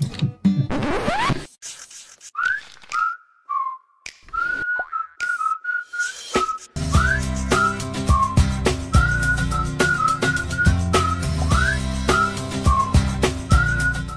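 Upbeat background jingle carried by a whistled melody. A rising sweep comes in the first second or two, then the whistled tune enters about two seconds in over sparse accompaniment. Bass and drums join about seven seconds in.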